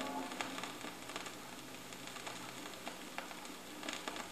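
Vinyl LP surface noise in the quiet groove between two tracks: a faint steady hiss with scattered clicks and pops. The last notes of the previous song die away in the first moment.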